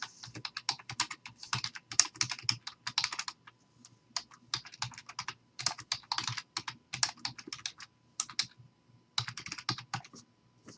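Typing on a computer keyboard: quick, irregular runs of keystrokes, broken by short pauses about four seconds in and again near nine seconds.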